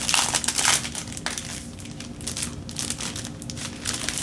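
Plastic bag packaging around a set of planner pads crinkling as it is pulled open. The crinkling is densest in the first second, then comes in scattered short rustles.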